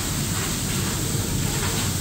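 Heavy rain pouring down in a steady, dense rush.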